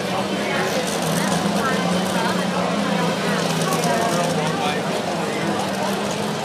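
Superstock pulling tractor's engine idling steadily with a low, even hum while hooked to the sled, under a murmur of voices.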